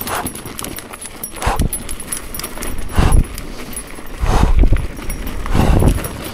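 A mountain-biker's heavy breathing, one loud breath about every second and a half, over tyre noise on dirt and light clicking rattle from the bike.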